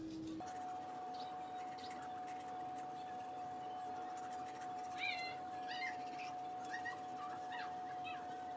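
Manual toothbrush scrubbing faintly against teeth, with a few short squeaky chirps about five seconds in and near the end. A single steady held tone runs under it, starting about half a second in.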